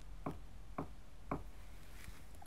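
Knuckles knocking on a bathroom door: three light, evenly spaced knocks about half a second apart.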